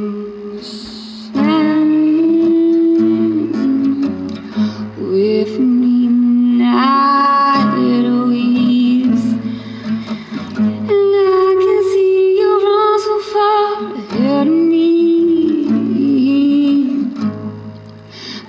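Acoustic guitar played along with a voice singing long held notes that slide up and down in pitch.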